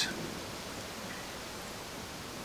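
Steady, even background hiss of the outdoor surroundings, with no distinct event standing out.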